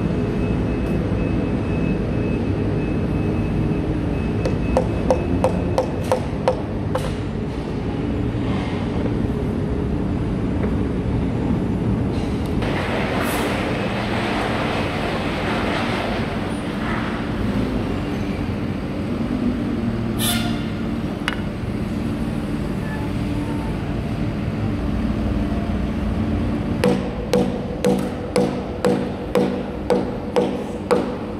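Background music throughout, with a short run of light taps about five seconds in. Near the end a hammer knocks a glued-in wooden strip into a groove in a timber beam, in regular sharp blows about one and a half a second.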